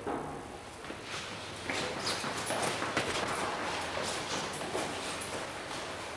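Footsteps of hard-soled shoes on a hard floor or stairs, a steady run of steps starting a couple of seconds in.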